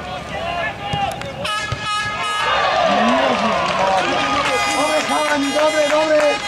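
Football spectators shouting, many voices swelling together about two and a half seconds in, with shrill, steady high tones cutting through briefly before the swell and again near the end.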